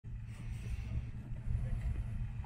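An off-road 4x4's engine running at a distance, heard as a steady low rumble that wavers in level.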